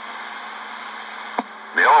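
CB radio receiver hiss between transmissions. About one and a half seconds in there is a sharp click as the next station keys up, and then a voice comes over the radio.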